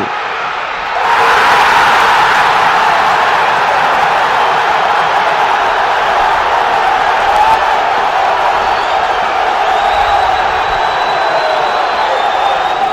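Football stadium crowd cheering a goal, the noise swelling about a second in and then holding steady and loud.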